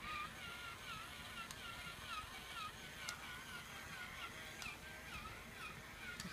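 A faint, high warbling chirp repeating about twice a second, with a few light clicks.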